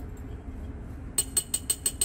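Quick run of about six light glass clinks, starting a little past halfway, as the rim of a small glass graduated cylinder taps against the glass neck of a round-bottom flask while liquid is poured in.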